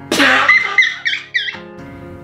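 A young woman's high-pitched, squealing giggle: a sharp breathy burst, then about four short squeaky rises and falls, over soft background music.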